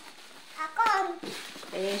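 A young child's voice: one short vocal sound about a second in, higher-pitched than the woman's voice that begins near the end.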